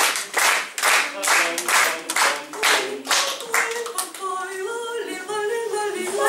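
An audience clapping in a steady beat, about two claps a second. A little past halfway the claps stop and a few women's voices start singing unaccompanied.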